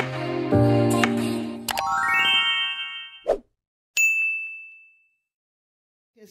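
Channel intro jingle: sustained music chords, then a rising run of chime tones, a short sharp pop, and a single bright bell-like ding that rings and fades, the sound effect of a subscribe-button and notification-bell animation.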